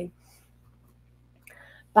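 A short pause in a woman's speech: a faint steady low hum under near silence, then a brief soft noise just before her voice comes back at the end.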